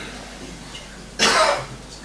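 A man coughs once, loudly, a little past the middle.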